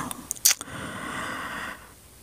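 A couple of sharp clicks, then about a second of steady rustling of bedding and clothes being handled on a bed.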